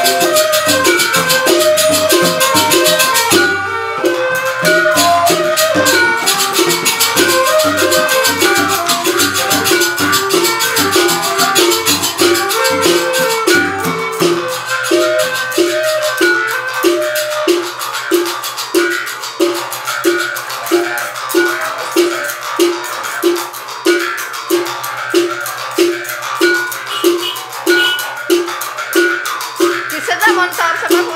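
Several Balinese genggong, sugar-palm mouth harps, played together with twanging, buzzing notes. The first half is busy and interlocking; from about halfway the playing settles into a steady pulse of roughly two beats a second over a low drone.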